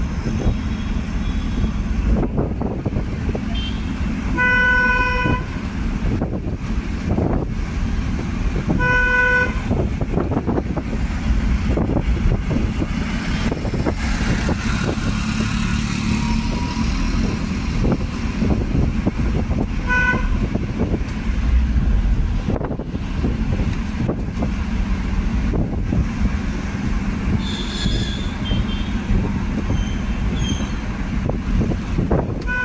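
Traffic heard from a moving vehicle: a steady rumble of engine and road with buffeting, and vehicle horns tooting, twice for about a second each around 5 and 9 seconds in, and once briefly around 20 seconds.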